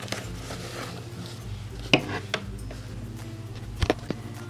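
A few light clicks and taps of a small plastic doll-clothes hanger being handled and hung up, the sharpest about two seconds in and another near the end, over soft background music.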